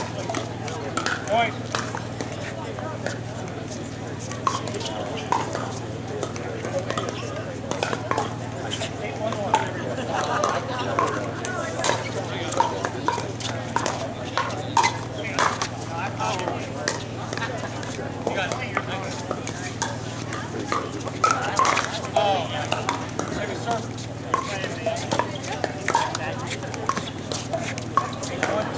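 Pickleball paddles striking a plastic ball: repeated short, sharp pops through rallies, irregular in spacing, over a background of indistinct voices.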